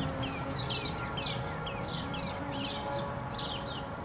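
Small birds chirping: quick, high, falling chirps, several a second, over a low steady rumble.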